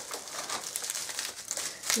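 Paper and bubble-wrap packaging crinkling as it is unwrapped by hand, a run of small irregular crackles.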